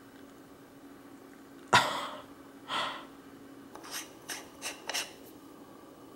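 Handling noise from a screw-on camera add-on lens on a stone countertop: a knock a little under two seconds in, a short rush of noise, then several short rasping scrapes as the lens is rubbed and worked by hand.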